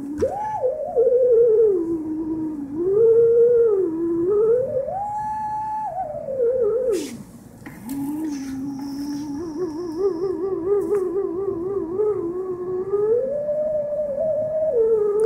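A single electronic oscillator tone, its pitch set by an optical sensor under a hand-pressed wooden test key, slides smoothly up and down between low and high notes like a theremin. About halfway through it drops, with a few clicks, then carries on with a fast warbling vibrato for several seconds.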